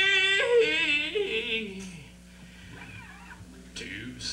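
A live rock band's final wavering high note, sung or played, jumps up, then slides down and dies away about halfway through. A quiet, low steady hum is left behind.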